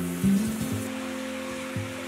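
Water running from a clawfoot bathtub's faucet into the tub, a steady rush over acoustic guitar music.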